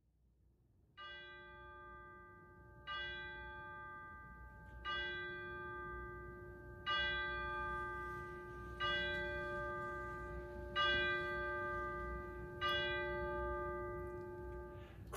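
A single bell tolled seven times at one steady pitch, about one stroke every two seconds, each stroke ringing on into the next.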